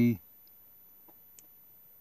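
Two faint ticks about a second in, from a hobby-knife tip picking at the thin plastic grille of a model car kit; otherwise near silence.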